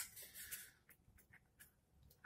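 Near silence, with a few faint rubbing and handling noises from a black fixed-blade knife in its Kydex sheath in the first half-second.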